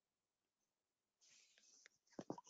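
Near silence, with a faint soft hiss in the second half.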